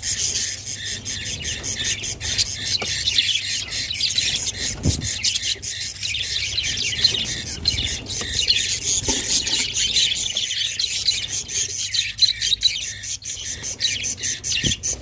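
Budgerigars chirping in a continuous, high-pitched, rapid chatter, with a few soft knocks.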